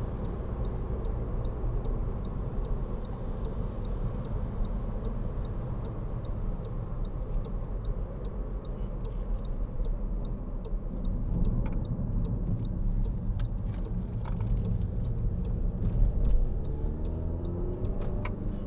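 Cabin noise of a 2013 Audi Q3 2.0 TDI four-cylinder diesel on the move: a steady engine drone under tyre noise on a wet road.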